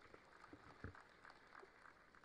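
Near silence: faint room tone with a few scattered faint clicks or taps.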